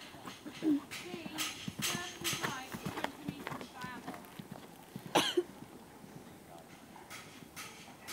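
Hoofbeats of a horse trotting on a sand arena, mixed with quiet talk from people near the camera, and a brief louder sound a little after five seconds in.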